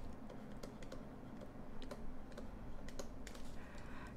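Faint light taps and scratches of a stylus writing on a tablet screen, a few irregular small clicks at a time.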